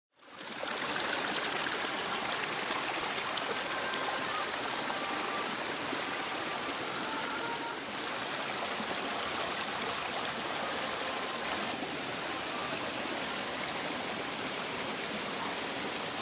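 Steady rushing of flowing water, with a few faint short tones in the first half.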